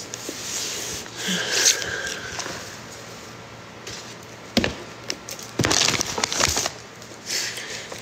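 Rustling and crackling as packaging and a stiff printed picture are handled and pulled from a cardboard box. There is one sharp crack about halfway through, and a dense run of crackles a little later.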